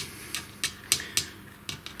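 A handful of light, irregular plastic clicks as the cable-clamping nut on a CNC spindle motor's plug is screwed up by hand around the corrugated-conduit cable.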